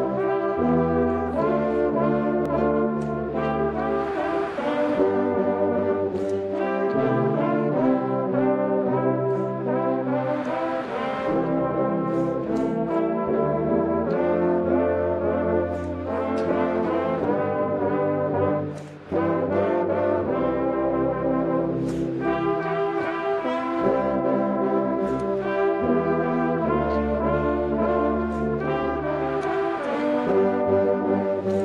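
A brass band of cornets, horns, euphoniums and tubas playing together in held chords over a strong bass line, phrase by phrase, with a brief break about nineteen seconds in.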